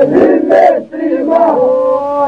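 Men's group singing a Lab-style Albanian polyphonic song: a held phrase breaks off and the voices come back in with a loud, rough onset, dip briefly about a second in, then settle into another held chord.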